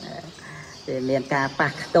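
A man speaking Khmer in a preached Buddhist talk: a short lull at the start, then speech from about a second in.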